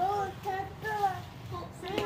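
A young child singing short, high-pitched phrases.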